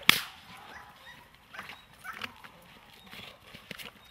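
During bite work with a German Shepherd on a helper's hidden sleeve, a single sharp crack, like a whip crack or a stick hit, comes just after the start. It is followed by scuffling and a few faint knocks.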